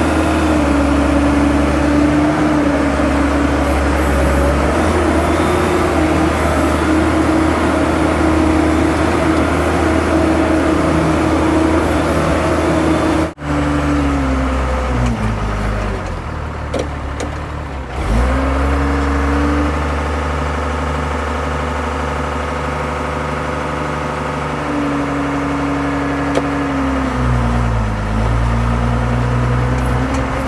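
Diesel engine of a loaded off-road dump truck running hard as it hauls dirt. Its pitch holds steady, then falls and picks back up around the middle and again near the end, with two brief drop-outs about 13 and 18 seconds in.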